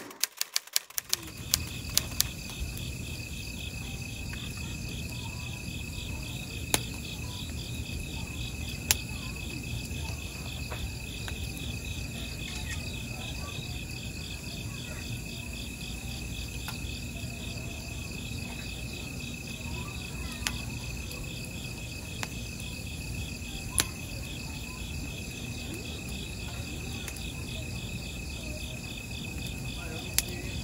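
Night insects chirping in a steady, high, pulsing trill, with a wood fire in a metal fire pit giving an occasional sharp pop. A quick run of sharp clicks sounds in the first two seconds.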